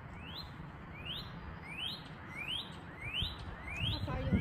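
Northern cardinal singing a series of upslurred whistles, each note rising quickly in pitch, repeated about every 0.7 seconds, six times in a row.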